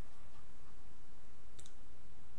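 Steady background hiss with one short, sharp click about one and a half seconds in.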